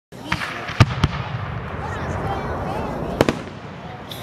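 Aerial firework shells bursting: several sharp bangs, the loudest just under a second in and again a little past three seconds.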